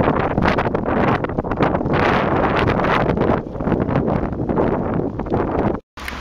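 Wind buffeting the microphone of a camera riding on a moving bicycle, a loud, rough, uneven rush that cuts off abruptly just before the end.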